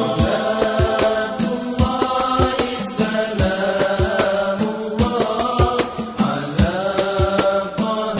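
A nasyid song: male voices sing a chant-like melody over a fast, regular beat of hand-drum strikes.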